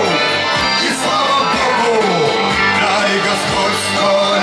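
A live song over the PA: a man singing to an amplified acoustic guitar, over a steady beat of about two low strokes a second.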